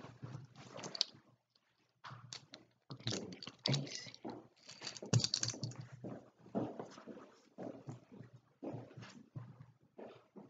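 Clothing rustling and brushing close to the microphone as a camo full-zip hoodie is pulled on and adjusted, with irregular scrapes and soft thumps.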